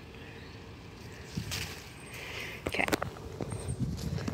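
Wind rumbling on the microphone, with a few short rustles of persimmon leaves and twigs as a leaf is picked from the branch.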